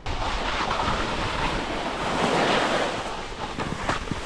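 Steady rushing wind noise on an outdoor camera microphone on a ski slope, with no voices.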